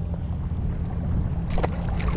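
Wind buffeting the camera microphone, a steady low rumble, with one brief sharp sound about one and a half seconds in.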